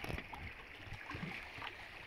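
Faint lapping and trickling of small waves against the stones of a lakeshore, with a few small clicks.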